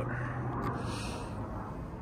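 Low, steady background noise with a single faint click about two-thirds of a second in and a soft hiss around it.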